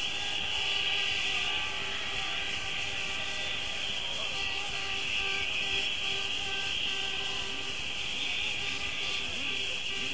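Rave crowd cheering and whistling in a steady, high-pitched roar in answer to the MC's call to make some noise, with faint held tones underneath.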